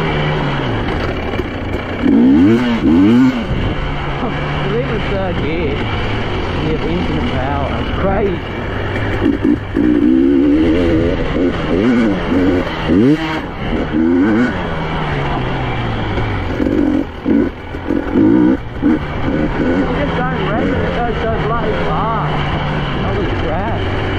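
Two-stroke engine of a 2023 KTM 300 enduro dirt bike under way, its revs rising and falling again and again as it is ridden, with a few brief drops in throttle about two-thirds of the way in.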